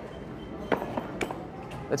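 A few light clicks and taps of small items being handled on a wooden shop counter, over quiet room tone.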